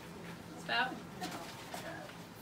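A brief, high-pitched vocal sound from a person about three-quarters of a second in, with a couple of fainter short voice sounds after it, over a steady low room hum.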